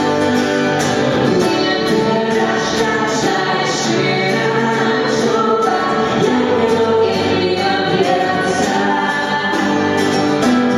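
Live song performed by a man and a woman singing together, accompanied by acoustic guitar and a Nord Electro 2 stage keyboard.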